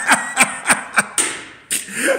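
A man laughing: breathy bursts about three a second that fade away just over a second in.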